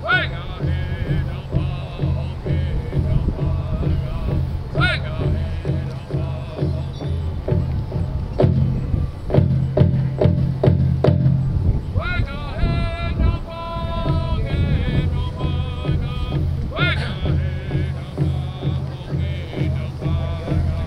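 Powwow drum group singing to a large hand drum: a steady drumbeat under high voices that slide up and down in long sung calls.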